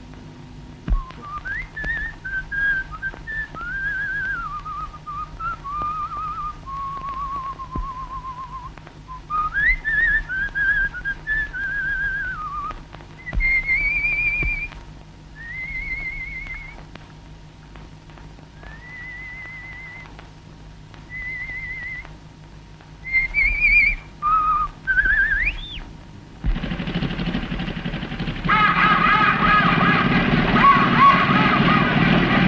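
A person whistling a tune: one clear melodic line with sliding, wavering notes in short phrases broken by pauses. About three and a half seconds before the end, the whistling gives way to a louder, dense rush of noise as an old open car drives through a ford.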